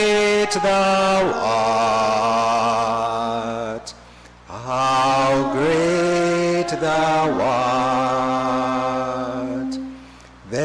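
A slow hymn sung in long, held notes with vibrato. It comes in two phrases, with a short break about four seconds in, and the singing stops just before the end.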